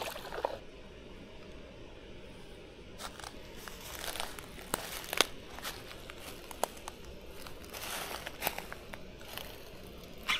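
A small splash right at the start, then faint, irregular clicks and crunches of a spinning rod and reel being handled, cast and cranked.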